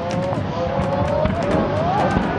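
Several firework shells whistling as they rise, their whistles climbing slowly in pitch, over scattered short cracks.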